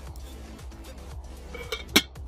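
A metal lid clinks down onto a metal camp mug near the end, after a lighter click a moment before, over soft background music.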